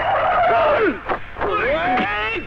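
Car tyres squealing as an SUV pulls in and brakes: one long squeal over the first second, then a shorter rising one near the end.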